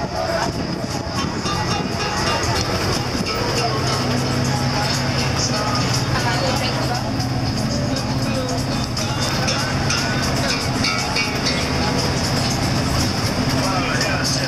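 Inside a moving bus converted from a school bus: engine and road noise, with passengers talking and music playing. A low steady hum comes in about four seconds in.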